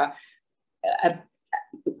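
A woman's voice trails off, and after a short pause she makes one brief non-word vocal sound about a second in. A couple of small mouth noises follow before she speaks again.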